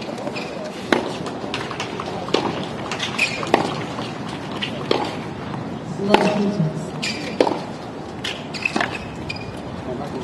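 Tennis rally on a hard court: the ball struck back and forth by the players' rackets, sharp hits about every second and a half, with ball bounces between them.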